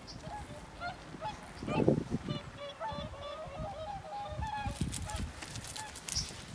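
Many short honking calls overlapping in a goose-like chorus, densest in the middle, with a loud low thump about two seconds in.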